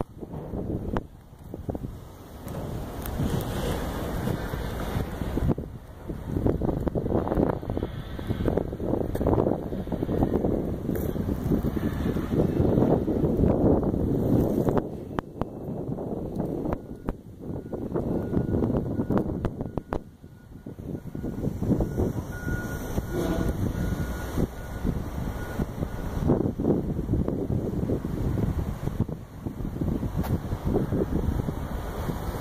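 Wind buffeting the microphone in uneven gusts, with a faint thin steady tone in the middle stretch.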